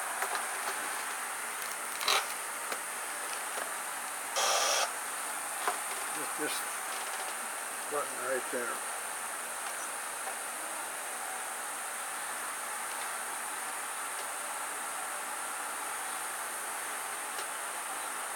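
Steady high-pitched buzz of insects, with a short rustle about four and a half seconds in and a few soft knocks.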